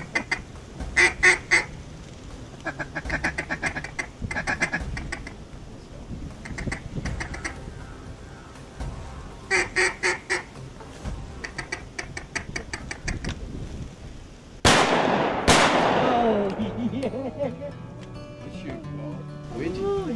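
Runs of duck quacks, repeated in short bursts, then two shotgun shots about a second apart near the end, at least the first of them a miss.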